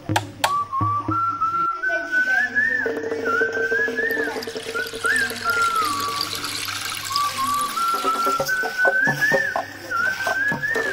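Background music: a whistled melody that slides up and down between held notes, over a low steady note in the middle part.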